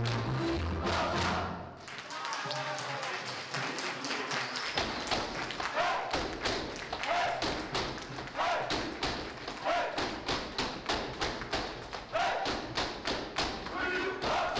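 Romanian folk dancers stamping on a stage floor in a fast, even rhythm, about four or five stamps a second, with short shouted calls recurring among the stamps. The backing music drops away about two seconds in, leaving the stamping.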